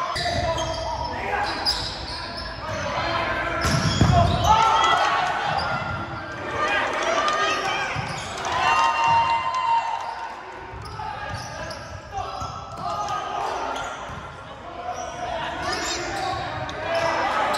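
Indoor volleyball play in a gymnasium: players calling out, sneakers squeaking on the hardwood floor and the ball being struck, all echoing in the hall.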